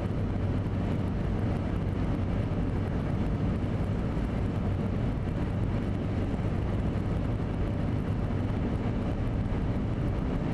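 Steady road noise of a car cruising at highway speed, heard from inside the cabin: tyre noise on wet pavement with a constant low engine hum.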